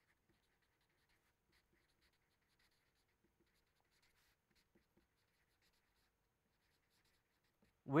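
Marker pen faintly scratching across paper while words are written by hand, in short strokes.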